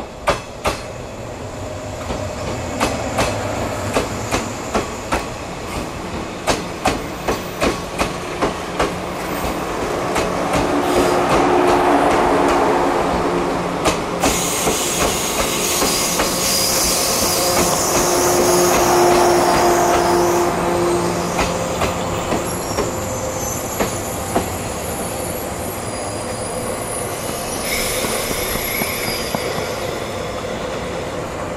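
A train passing close by, its wheels clacking rhythmically in pairs over rail joints, with a continuous running rumble that swells twice in the middle.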